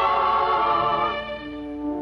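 Soundtrack music: a choir holds a sustained chord with slight vibrato. The chord fades away about halfway through, leaving a single low held note.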